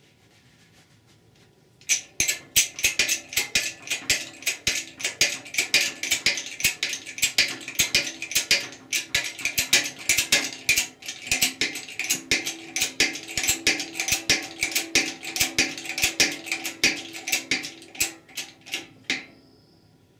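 Hydraulic bottle jack on a shop press being pumped to compress the direct clutch pack: rapid metallic clicking and ticking from the pump handle and press, several clicks a second with a faint ringing underneath. It starts about two seconds in and stops about a second before the end.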